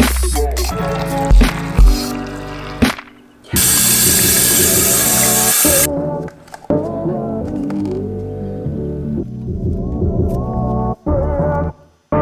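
Background music with a bass line and a beat, with a loud hissing swell about three and a half seconds in that lasts about two seconds.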